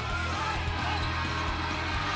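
A basketball being dribbled on a hardwood court, its repeated bounces heard over steady arena crowd noise, with music in the background.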